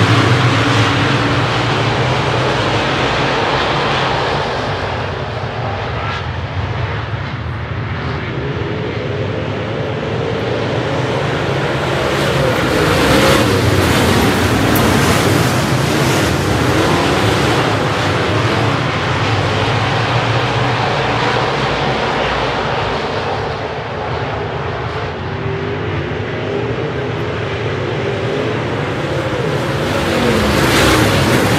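A pack of USMTS dirt modified race cars at racing speed, many V8 engines at once, their pitch rising and falling as they power down the straights and lift for the turns. The sound swells and fades as the pack passes.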